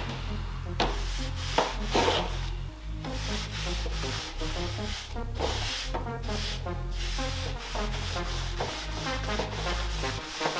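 Background music with a deep, steady bass line, over which a damp sponge rubs back and forth across a bare wooden board.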